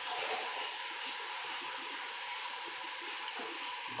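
Puri frying in hot oil in a wok: a steady sizzle, with a light click about three seconds in.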